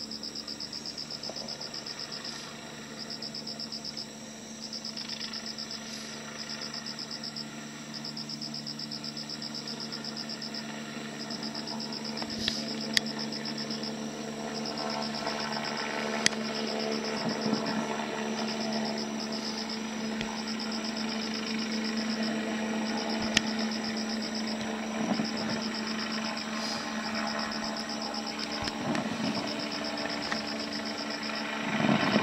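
Insects chirping in a fast, high pulsing trill that comes in runs of a second or two, over a steady low hum. From about twelve seconds in, a few sharp, distant firework cracks stand out.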